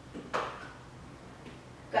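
A woman's short, breathy exhale, with a faint voice in it, about a third of a second in, then a fainter breath near the end, over a low steady room hum.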